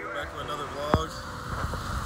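Low rumble of road traffic with faint voices talking in the background, and a single sharp tap about halfway through.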